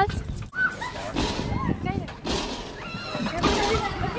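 Short, high-pitched yips and whines from a dog, among scattered background voices.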